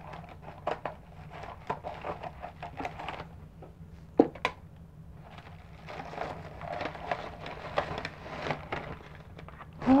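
Plastic bubble mailer being handled and opened, crinkling and crackling in irregular bursts, with a couple of sharp snaps about four seconds in.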